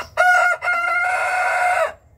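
A young rooster crowing once: a short opening note, a brief break, then a long held final note of over a second that cuts off near the end.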